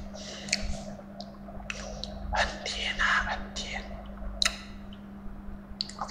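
A man whispering close to the microphone in short breathy phrases, over a steady low hum.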